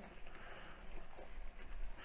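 Chili in a Dutch oven over direct charcoal heat, cooking with a faint steady sizzle.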